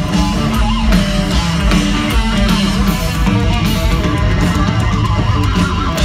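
Live heavy metal band playing loudly through a festival PA, with electric guitar to the fore, heard from within the crowd.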